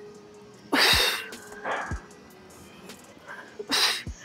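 A woman breathing out hard through the mouth on each crunch of a jackknife sit-up. The two short breaths come about three seconds apart, one about a second in and one near the end.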